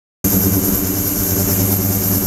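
Ultrasonic tank equipment running: a steady hum with a thin, high-pitched whine above it. It comes from the ultrasonic transducers and the degassing and microbubble liquid circulation pump working the water.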